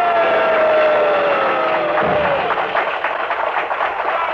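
A jazz combo closes a number: a wind instrument holds a long final note that sinks slowly in pitch, with a low thump about two seconds in, then the small party audience starts applauding.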